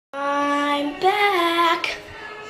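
A young girl singing two long drawn-out notes: the first is held steady, the second wavers and bends in pitch. A short breathy sound comes at the end.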